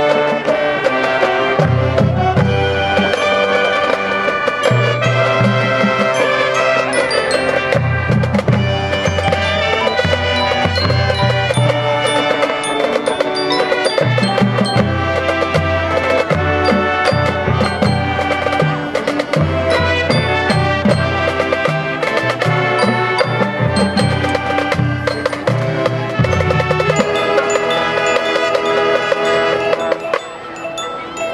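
School marching band playing on the field: brass and woodwinds holding chords over repeated bass-drum hits, with mallet percussion (glockenspiel, marimba) from the front ensemble.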